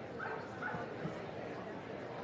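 A dog giving two short barks about half a second apart, over the murmur of a crowd.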